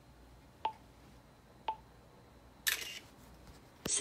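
Amazon Echo Spot taking a selfie: two short countdown beeps a second apart, then a camera shutter sound from its speaker about a second later.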